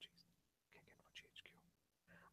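Near silence: faint, indistinct speech at a very low level over a faint steady low hum.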